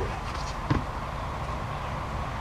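Steady low outdoor background rumble, with one faint knock about three quarters of a second in as a full plastic bucket of joint compound is set down on the ground.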